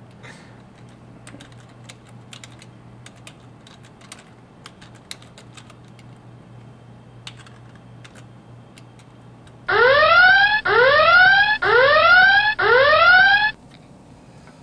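Computer keyboard keys clicking in scattered keystrokes, then about ten seconds in an electronic alarm sounds four loud rising whoops, each just under a second long.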